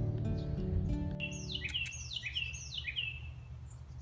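Acoustic guitar music stops about one and a half seconds in. A bird then calls three times in quick succession, each a short down-slurred call, over a low steady background noise.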